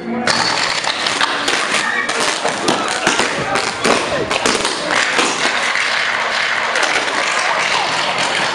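Electrical arcing from overhead power cables shorting out: a loud, dense crackle of rapid snaps and sizzling that starts suddenly just after the beginning and keeps going, with people's voices underneath.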